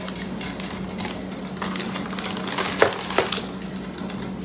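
Frozen whole tomatoes knocking together as they are packed into a plastic zip-top bag on a kitchen scale, with the bag rustling. There are a few sharp knocks, the loudest about three seconds in, over a steady low hum.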